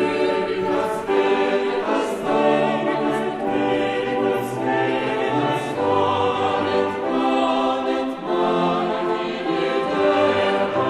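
Early Baroque sacred choral music: a psalm setting sung by a mixed choir with a consort of Renaissance dulcians and sackbuts, in sustained chords over a low bass line.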